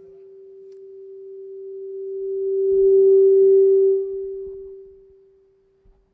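Microphone feedback through a PA system: a single steady pitched tone that swells to a loud peak about three seconds in, is cut back just after four seconds, and fades away.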